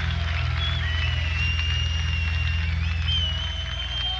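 Live rock band music near the end of a song: a held low drone that pulses steadily, with thin high gliding tones above it. It eases down slightly near the end.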